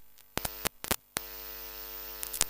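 Public-address microphone line cutting out: a few sharp crackling clicks with brief dropouts in the first second or so, then a steady electrical mains hum.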